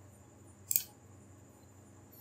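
A single short click of a computer mouse about three quarters of a second in, over quiet room tone.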